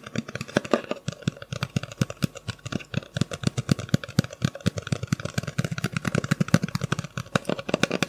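Fingers tapping rapidly and close up on a hard object, a fast, uneven patter of sharp taps many times a second.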